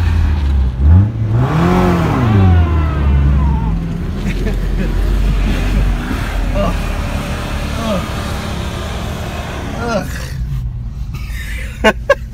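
Pickup truck engine revving up and dropping back twice in the first few seconds, then settling to a lower, steady engine rumble.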